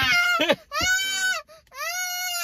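A young girl crying out in fright: three drawn-out, high-pitched wailing cries, the last one starting near the end.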